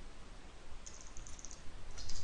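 Computer keyboard typing: a quick, faint run of keystrokes about a second in, over a steady low hiss.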